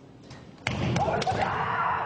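A kendo strike: a sudden loud impact about two-thirds of a second in, followed by a few more sharp knocks and short shouted kiai.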